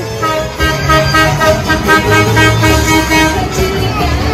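A truck's musical horn playing a tune of short held notes, over a steady low hum.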